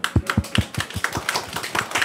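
Applause from a small group of people clapping their hands: a dense, uneven run of sharp claps.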